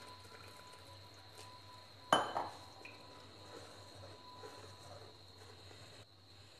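Water poured faintly from a steel tumbler into batter in a stainless steel bowl, with one sharp metallic clink about two seconds in and a few soft knocks after it.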